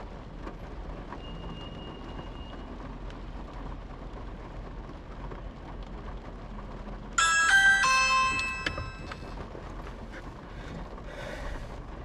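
Steady low hum of a car cabin stopped in traffic. About seven seconds in comes a short electronic chime: a few bright notes that ring for about a second and a half.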